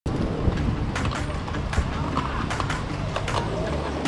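Wind noise on the microphone of a camera riding on a mountain bike, with repeated short clicks and rattles from the bike and voices of nearby riders.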